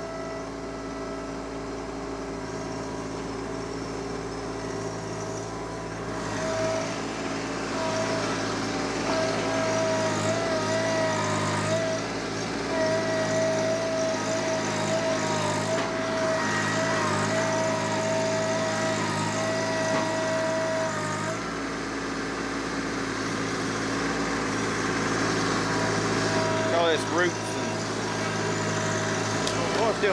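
TYM T264 subcompact tractor's three-cylinder diesel running under load as its loader grapple digs into dirt and roots. A high wavering whine rides over the engine from about a fifth of the way in until about two-thirds through.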